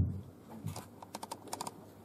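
Laptop keyboard keys clicking: a short irregular run of key presses, from about half a second in to near the end, after a thump at the very start.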